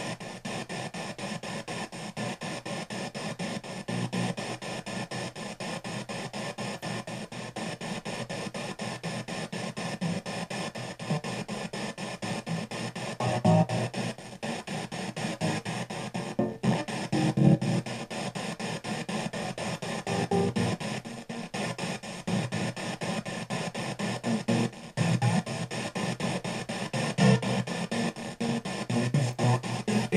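P-SB7 spirit box sweeping through FM stations, played out through a karaoke machine's speaker: fast, choppy radio static in quick clips, with louder snatches of broadcast sound every few seconds.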